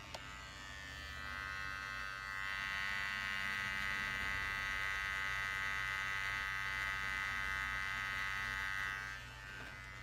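Electric hair clippers running with a steady buzz during a haircut. The buzz grows louder about two and a half seconds in, holds, and drops back near the end.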